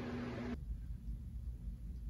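Box fans running, a steady rushing noise with a hum, which cuts off suddenly about half a second in and leaves quieter room tone with a low rumble.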